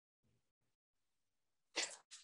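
Near silence, then near the end a short breathy sound: a person drawing breath just before speaking.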